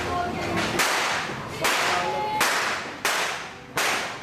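Firecrackers going off on New Year's Eve: five loud, sharp bangs about 0.7 seconds apart, each echoing off the street.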